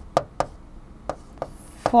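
Pen tip tapping and clicking against a display board while handwriting notes: several short, sharp taps at uneven intervals.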